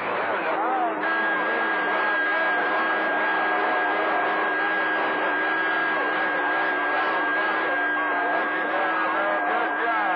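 CB radio receiving channel 28 skip: steady static with garbled, overlapping voices that cannot be made out, and a steady high whistle, a carrier beat between signals on the channel, coming in about a second in.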